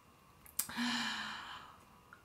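A woman sighs: an audible breath out that starts about half a second in with a brief hum, then fades away.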